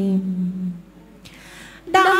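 Unaccompanied women's voices singing quan họ, a Vietnamese folk duet, hold the last note of a phrase on one steady low pitch that fades out a little under a second in. A soft breathy hiss follows, and the next sung phrase begins right at the end.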